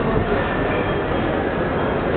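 A train running, heard as a steady, even rumble and rush of noise in a busy station.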